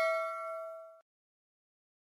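Bell ding sound effect ringing out with a few clear steady tones and fading, then cutting off suddenly about a second in.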